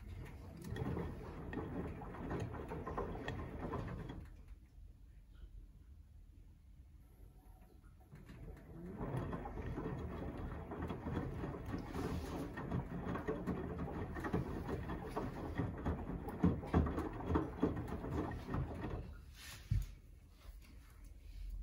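Samsung WW90J5456FW front-loading washing machine tumbling laundry in soapy water: the drum turns for about four seconds, rests for about four, then turns again for about ten seconds. A short sharp knock comes near the end.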